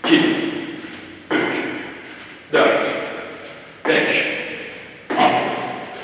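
A person doing jump squats, landing on the gym floor five times at about one landing every second and a quarter. Each landing starts suddenly and rings on in the echo of the large hall.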